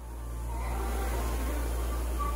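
Concept2 rowing machine's air-resistance fan flywheel whooshing as a rowing stroke drives it up to speed. The sound swells over the first second, then holds steady with a low rumble under it.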